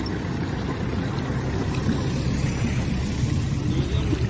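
Steady low rumble of a pickup truck's engine as it drives through knee-deep floodwater, mixed with the water sloshing around it and around people wading.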